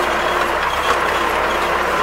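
Tractor engine running steadily at low throttle, heard from inside the cab, with the mechanical clatter of a CLAAS Rollant 46 round baler working behind it.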